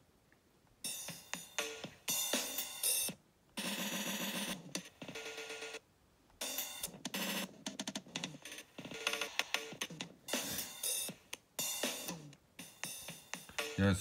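Electronic drum loop played through the GlitchCore glitch effect, chopped into stuttering repeats that break off abruptly, with short silent gaps, as the settings are changed by moving a finger along the glitch strip.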